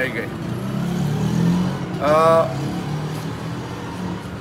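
A man's voice pausing mid-speech over a steady low rumble, with a single drawn-out hesitation sound, "aa", about two seconds in.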